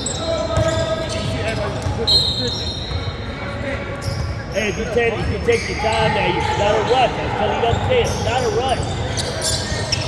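Indoor basketball game on a hardwood gym floor: a short referee's whistle about two seconds in, then sneakers squeaking in short rising-and-falling chirps and a basketball bouncing, with voices in the echoing hall.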